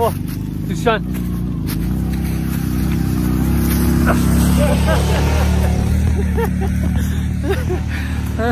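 ATV (four-wheeler) engine running steadily at low revs close by, growing louder through the middle, with short voice calls over it.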